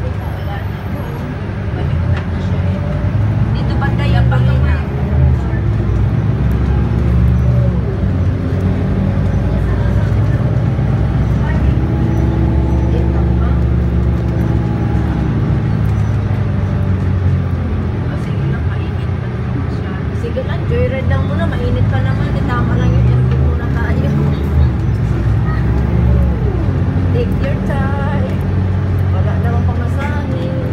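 Bus engine running and road noise heard from inside the passenger cabin while driving, a steady low rumble whose pitch rises and falls about halfway through, with people talking in the background.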